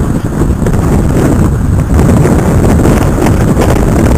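Strong storm wind buffeting the microphone in a loud, continuous low rumble, over rough surf churning along the seawall.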